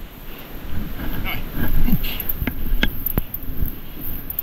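Wind buffeting the microphone while snow is dug by hand from around a snowmobile's ski. A short grunt or voice sound comes about two seconds in, followed by a few sharp snaps or knocks.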